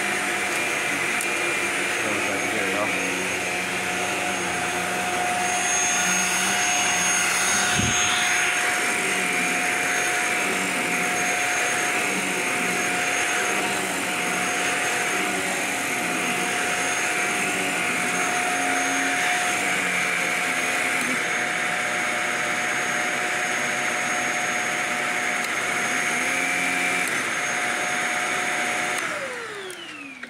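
Shark Apex upright vacuum running steadily with a high whine and a rubbing noise, typical of something caught in the brushroll. There is one low thump about eight seconds in. Near the end it is switched off and the motor winds down, its pitch falling.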